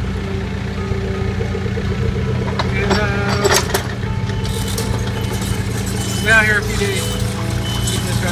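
A Komatsu PC35MR mini excavator's diesel engine running steadily, with music and a vocal line over it; the voice comes in briefly about three seconds in and again past six seconds.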